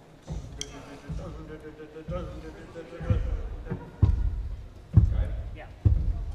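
Kick drum thuds about once a second, setting the tempo, growing louder from about three seconds in.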